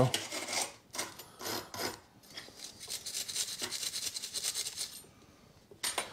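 Hand wire brush scrubbing the backs of small steel brake-pad shims from a caliper carrier to clear rust and brake dust: a few scratchy strokes, then quick, even back-and-forth strokes that stop about five seconds in, followed by a single click.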